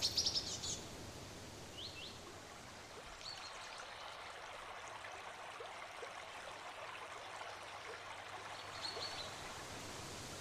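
Small birds chirping faintly over a steady hiss of outdoor ambience: a quick cluster of chirps right at the start, a few short rising chirps around two and three seconds in, and another brief cluster near the end.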